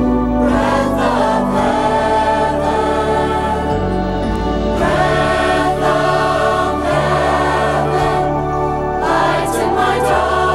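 A teenage choir singing together over instrumental accompaniment, with sustained low bass notes that change every second or two.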